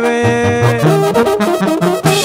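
Mexican brass band (banda-style) music playing an instrumental passage: horns hold notes over a bass line that moves in short steps, with no singing.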